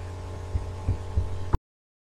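Steady low electrical hum of a screencast's microphone recording, with three soft low thumps in the second half, then a sharp click and a sudden cut to complete silence as the recording stops, about one and a half seconds in.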